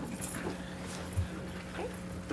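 A roomful of people sitting back down: scattered shuffling and chair creaks, with a soft thump a little past the middle, over a steady low hum.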